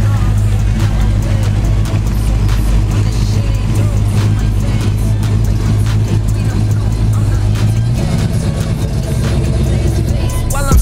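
Classic American muscle car's engine rumbling at low speed as it rolls past; the steady low rumble changes about eight seconds in as the car moves on. Hip-hop music plays over it throughout.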